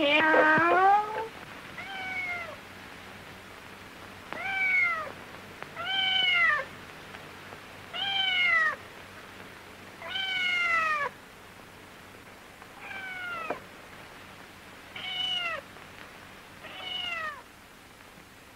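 Kitten meowing over and over: about nine short cries, one every two seconds or so, each sliding down in pitch, the one about ten seconds in the longest.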